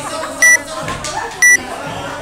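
Workout timer's countdown beeps: two short, loud, high beeps a second apart, counting down the last seconds before the 15-minute clock runs out.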